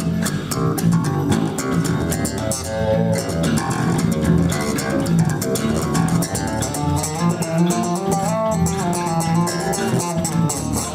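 Two amplified electric bass guitars played together in a freestyle jam, with busy plucked runs moving over sustained low notes.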